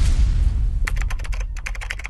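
Keyboard typing sound effect, a rapid run of sharp clicks starting about a second in, laid under text typing itself out on screen, over a low rumble.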